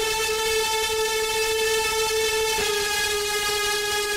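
Electronic dance track with a single sustained synthesizer note held at one steady pitch, with a brief break and re-attack about two and a half seconds in.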